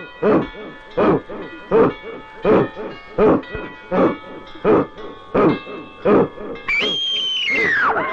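Suspense film background score: a steady pulse of short, low pitched hits, about three every two seconds, over held tones. Near the end a high sustained tone comes in and glides sharply down.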